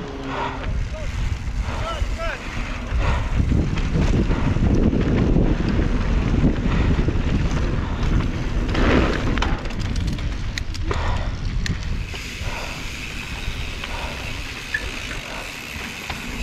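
Wind buffeting an action camera's microphone over the rumble of knobby mountain-bike tyres on a dirt trail descent, with the bike rattling over bumps. A few sharp clicks come from about nine to eleven seconds in.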